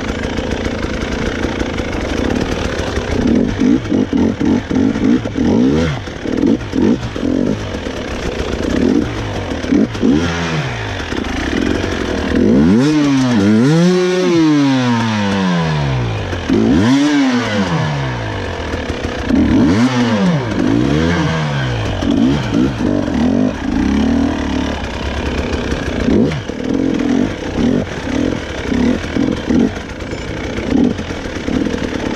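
A two-stroke 300 cc enduro motorcycle being ridden over rough trail. The engine note rises and falls again and again as the throttle is opened and closed, with several long revs in the middle.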